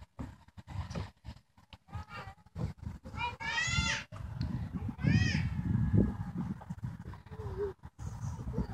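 A young child's high-pitched squeal, a long one about three seconds in and a shorter one about five seconds in, over a low rumble.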